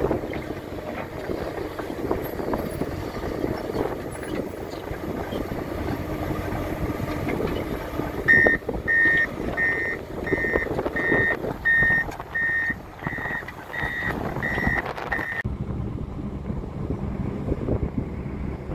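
Heavy earthmoving machines, a crawler bulldozer and a Cat M316 wheeled excavator, running with diesel engine noise and scattered knocks. About eight seconds in, a reversing alarm starts beeping, about eleven beeps evenly spaced under a second apart. It cuts off abruptly, leaving a steady low rumble.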